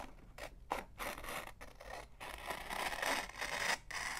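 Scissors cutting through a sheet of printed paper: a few short snips, then a longer, louder cut in the second half.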